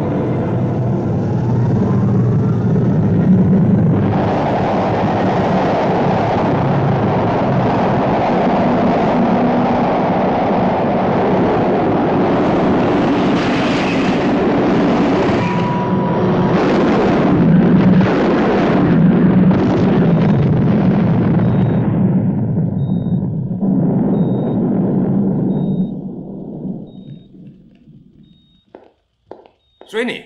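Film soundtrack of a test rocket launching: a loud, sustained rocket-motor roar that swells about four seconds in and surges roughly for a while. Near the end it dips, swells once more and dies away, as the launch fails and the rocket falls back.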